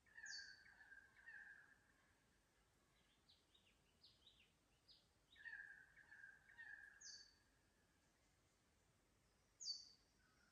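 Faint forest birds calling. One bird gives a drawn-out mid-pitched call in two phrases, at the start and again past the middle. Short high falling notes come three times, and a run of quick chirps sounds in between.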